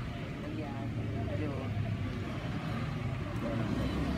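Indistinct background conversation over a steady low rumble.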